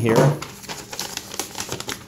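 A folded sheet of printer paper being opened out by hand: a quick run of small crinkles and crisp paper clicks.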